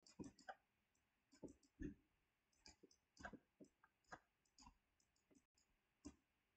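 Faint, irregular clicks and taps, a few a second, from handwriting on a computer with a digital writing input as new math is drawn on screen.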